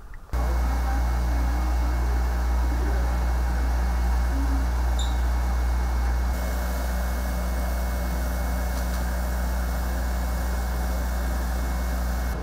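Desktop laser cutter running with its fans, a steady low hum with a deep drone underneath. The hum cuts in suddenly right at the start and its tone shifts slightly about six seconds in.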